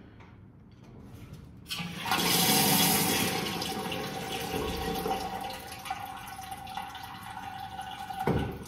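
Water rushing through a ball isolation valve as it is opened a crack with a screwdriver, starting suddenly about two seconds in, loudest at first, then settling to a steady hiss with a thin whistle as it drip-feeds the urinal cistern.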